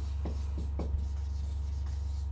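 Marker pen writing on a sheet of paper on a wall: a few short, faint strokes. A steady low hum runs underneath.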